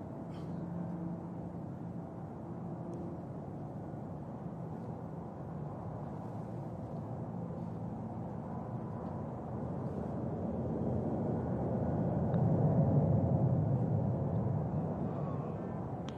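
Steady low background noise of the outdoor course, with no distinct strikes, swelling somewhat about twelve seconds in.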